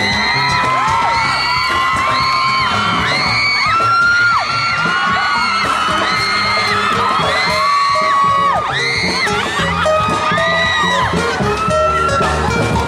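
Live band music played through stage speakers, with the audience repeatedly screaming and whooping in high, held, overlapping shrieks.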